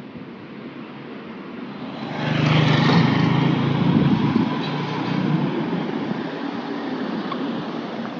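Motor scooter passing close by: its engine hum swells about two seconds in, stays loud for a couple of seconds, then fades away.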